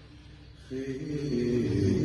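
Male chanting of a Shia latmiyya (mourning elegy), starting about two-thirds of a second in after a brief lull and then holding steady notes.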